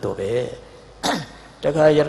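A man's voice speaking Burmese into a microphone during a sermon, broken about a second in by a short throat clearing before the speech resumes.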